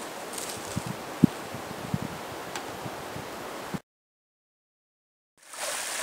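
Wind through the conifers and across the microphone, with a few soft knocks. Then comes a moment of dead silence, and a small stream splashing over rocks comes in near the end.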